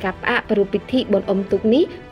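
A single voice narrating quickly and without pause over background music.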